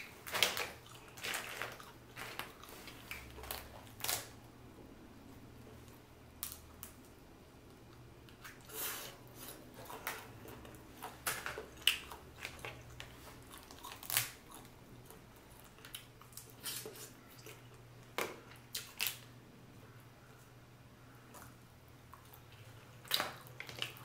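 Boiled crawfish shells cracking and snapping as they are peeled by hand, with chewing between, in irregular short clicks and crunches. A faint steady low hum runs underneath.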